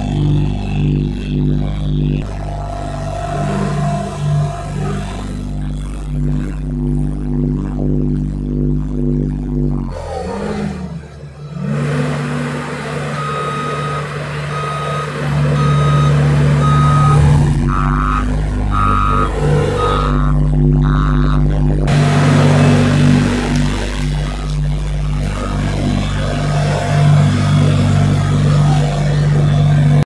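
Diesel engine of a LiuGong tandem road roller running steadily while it compacts fresh asphalt. Through the middle stretch, its reversing alarm beeps repeatedly for several seconds.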